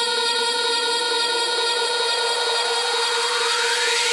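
Progressive-trance breakdown with no beat: a sustained synth pad chord over a noisy wash. A rising noise sweep (a riser) starts about two-thirds of the way in, building up toward the next drop.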